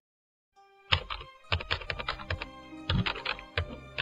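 Typing on a laptop keyboard: a quick, uneven run of key clicks starting about a second in, over background music with steady held notes.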